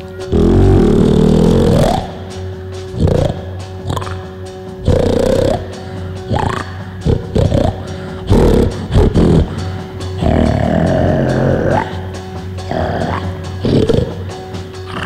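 A live rock band in a noisy, free-form passage: a held chord drones steadily under loud, irregular blasts whose pitch slides upward, the longest right at the start.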